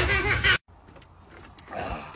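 Water hissing from a garden hose, with a voice over it, cut off abruptly about half a second in; a short, muffled swell of sound follows near the end.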